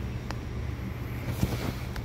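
Steady low hum of a subway car standing at a station platform with its doors open, with a few faint clicks and one knock about one and a half seconds in.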